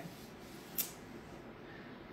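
A short pause in speech: faint room tone, with one brief soft hiss just under a second in.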